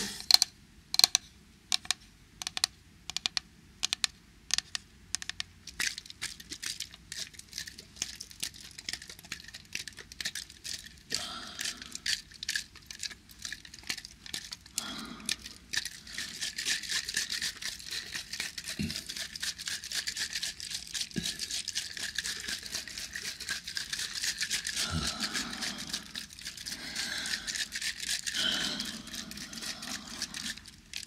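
Close-miked ASMR sounds of a thick object worked against the microphone: crisp, separate clicks and taps for the first ten seconds or so, then a denser, steady scratchy crackling.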